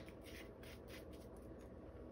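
Near silence: faint room tone with a few soft, short ticks of a small glass dropper bottle being handled.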